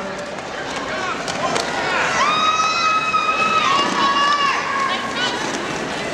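Crowd noise with a spectator's long, high cheer that rises and is held for about two seconds in the middle, with shorter shouts around it.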